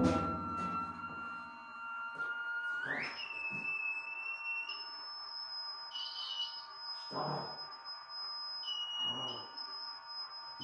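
Improvised electronic noise music: a steady high tone that glides sharply upward about three seconds in and holds as a higher whistling tone, while a second, lower tone cuts in and out several times. A few soft low hits sound in the second half.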